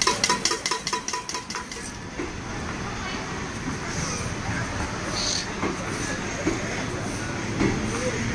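Rapid metallic rattling of a spoon in a steel mixing tin as jhal muri (spiced puffed rice) is tossed, about five clanks a second with a ringing tone, stopping about two seconds in. After that, a steady background of busy platform noise.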